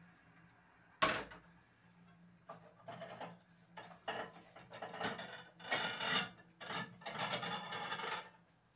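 Kitchen handling sounds: a sharp knock about a second in, then irregular rustling and scraping that grows denser and louder toward the end.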